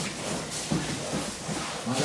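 Indistinct background voices in a hall, then a man calls out a short word near the end.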